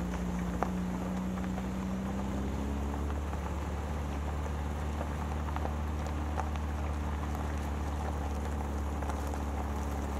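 A vehicle's engine running steadily while it rolls slowly over a gravel lane, tyres crunching on the stones with scattered small pops. The engine note rises slightly in the first couple of seconds, then holds.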